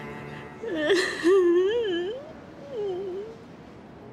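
A young woman crying: a sharp sob about a second in, then a wavering, wailing cry that swoops up and down for a couple of seconds, over soft background music.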